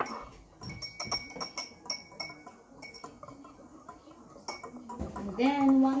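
A metal whisk clinking and tapping against the inside of a glass measuring cup during stirring: many quick, irregular strikes, some with a short glassy ring. A voice comes in near the end.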